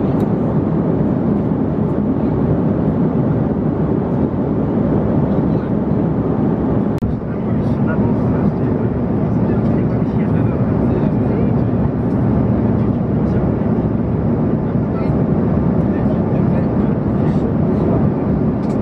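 Steady airliner cabin noise in flight: the low drone of the engines and rushing airflow heard from inside the cabin, with a brief drop about seven seconds in.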